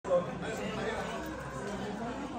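Several people talking at once in a hall: background chatter with no single clear voice. There is a short louder sound right at the very start.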